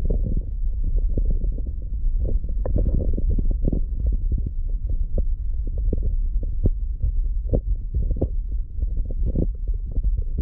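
Muffled underwater sound picked up by a camera submerged in a pond: a steady low rumble with irregular soft clicks and ticks.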